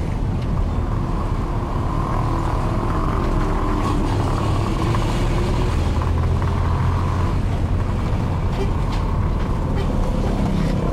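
Vehicle engine and road noise heard from inside the cabin while driving slowly through town traffic, a steady low rumble.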